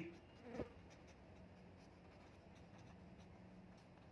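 Near silence: the faint scratching of a felt-tip pen writing on paper over a steady low hum, with a brief soft sound about half a second in.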